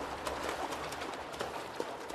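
Water splashing as fish leap and thrash against a net, with many scattered sharp slaps, slowly fading.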